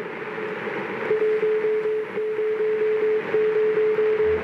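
A Morse code radio signal: one single-pitched tone keyed over a hiss of static. It sounds in short beeps at first, then holds nearly unbroken from about a second in.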